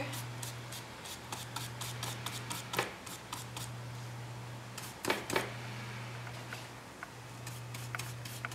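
Faint scattered light clicks and scratches of a watercolour brush and hands working over paper, with a few slightly louder taps about three and five seconds in, over a steady low hum.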